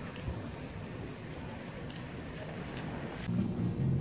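Quiet, low rumbling outdoor street noise with no distinct events.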